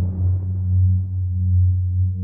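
Ambient outro music: a deep, steady drone that gently swells and fades in a slow pulse, with the last of a rumbling tail dying away near the start.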